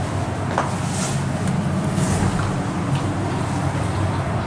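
Steady low rumble in and around a KONE traction elevator car, with a faint click about half a second in.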